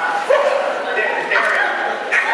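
A group of people laughing, with high-pitched voices rising and falling in short cries.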